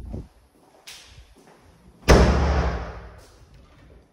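A door slams shut just after two seconds in, a sudden loud bang that rings on and dies away over about a second and a half in the bare, tiled room, blown shut by the wind. A lighter click comes about a second in.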